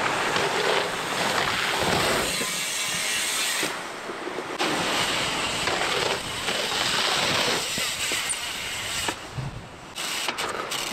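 Wind buffeting the camera microphone: a loud, steady rushing that dips briefly about four seconds in and again near the end.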